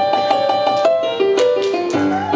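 A piano plays a blues figure: a string of quick repeated chords, then a run of notes stepping downward.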